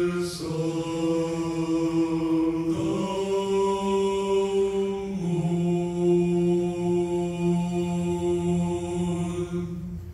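A male vocal quartet singing a cappella in close harmony through microphones, holding long sustained chords that shift every two to three seconds, the last one released just at the end.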